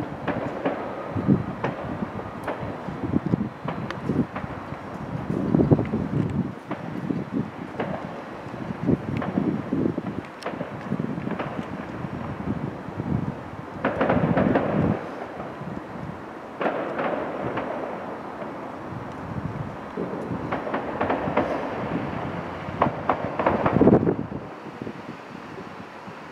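Wind buffeting the camera's microphone: an uneven rumbling noise that swells in gusts, with scattered small clicks.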